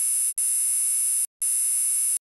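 Electronic buzz sound effect for a TV channel's logo ident: a loud, harsh, high-pitched buzz that cuts out twice for a split second.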